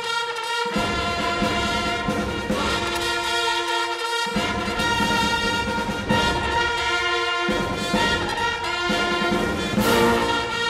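Military band music, led by brass, playing held chords. The low instruments drop out briefly at the start, again about three seconds in, and once more near seven seconds, leaving the upper brass on their own.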